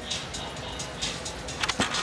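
Arena background of crowd murmur and music, with a sharp knock or two near the end as a gymnast springs off the springboard and catches the uneven bars.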